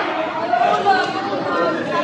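Background chatter: several people talking at once, their voices overlapping in a large hall.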